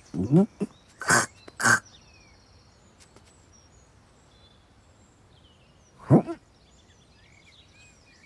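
A cartoon cat's vocal sounds, performed by a human voice: a short rising call at the start, two short breathy huffs a second or so in, and a falling grunt about six seconds in. Faint birdsong chirps underneath.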